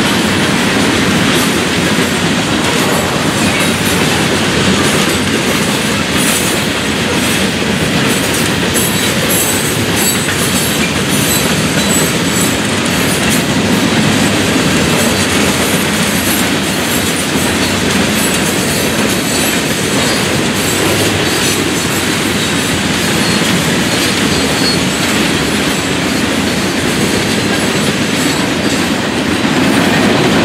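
Florida East Coast Railway freight cars rolling past at close range: loaded open-top hoppers, then autorack cars. Their steel wheels make a steady, loud running noise on the rails, with scattered clicks from the wheels over the track.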